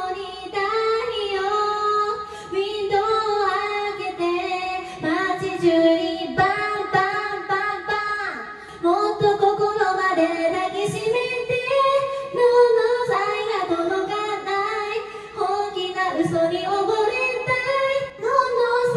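A woman singing a song solo into a karaoke microphone, in continuous phrases.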